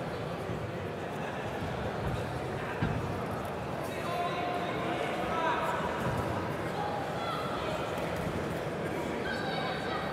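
Ringside crowd in a large hall: a steady murmur of voices with scattered shouts from spectators. One sharp thump stands out about three seconds in.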